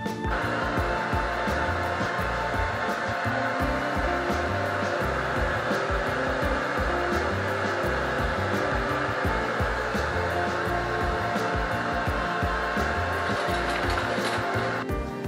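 Red handheld hair dryer blow-drying a dog's wet coat. It switches on just after the start and runs steadily.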